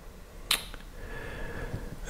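Quiet room tone with a single short, sharp click about half a second in, followed by a faint soft hiss.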